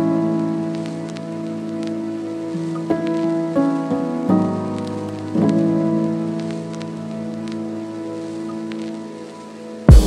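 Soft background music of sustained keyboard-like chords, changing every second or two. Under it is a faint crackling sizzle of spinach and onions sautéing in a pan.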